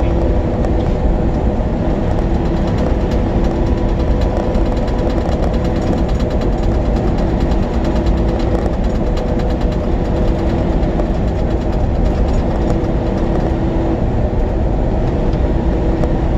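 Steady engine and road noise inside a semi-truck's cab while driving, unchanging throughout, with a few constant humming tones over a low rumble.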